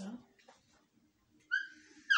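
Whiteboard duster squeaking against the board as a line of writing is wiped off: one short, high squeak near the end. It follows a brief noisy burst at the very start, over a faint steady room hum.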